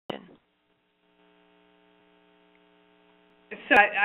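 Faint, steady electrical hum, a low buzz made of several even tones, on the audio line during a pause between speakers. It comes in about a second in and is cut off by speech near the end.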